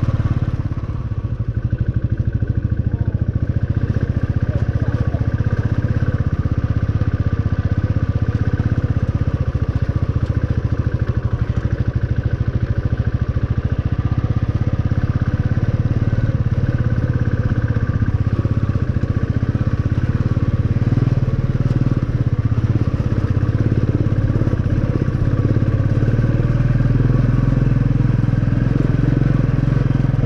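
Motorcycle engine running steadily as the bike is ridden along a rough dirt road.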